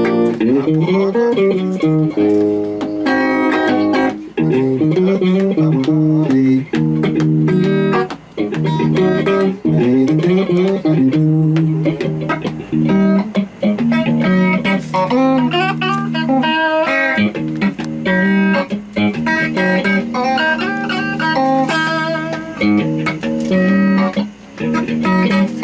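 Guitar playing a solo blues instrumental: a repeating low figure under single-note lines, with some notes sliding in pitch.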